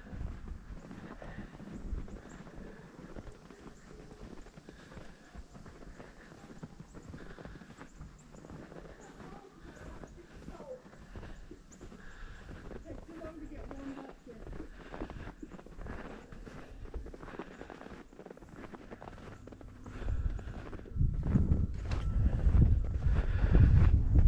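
Footsteps crunching through powdery snow at a steady walking pace. In the last few seconds, wind buffets the microphone.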